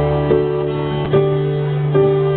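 Live acoustic band music: an acoustic guitar strums a new chord about every second over steady held notes.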